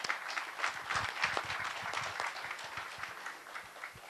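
Audience applauding, many hands clapping at the end of a speaker's talk; the applause is fullest in the first couple of seconds and thins out toward the end.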